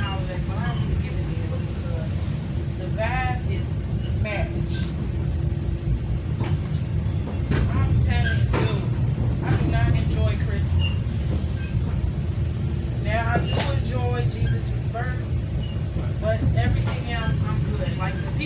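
Steady low rumble of a moving commuter train heard from inside the passenger car, with indistinct voices coming and going over it.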